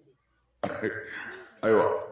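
A man clearing his throat into a microphone, starting suddenly about half a second in and lasting about a second, followed by a spoken word near the end.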